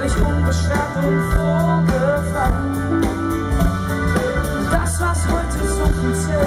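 Live band music: a man singing over a strummed steel-string acoustic guitar with a steady bass underneath.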